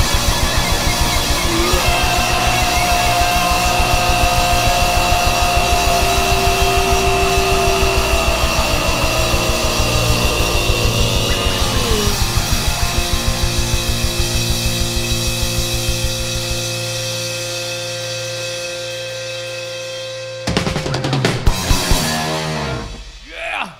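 Live hard rock band playing: a drum kit hammers a rapid, steady bass-drum beat under a long held guitar note that falls in pitch about twelve seconds in. The drumming then drops out, leaving a ringing held chord, and a few loud hits come back near the end.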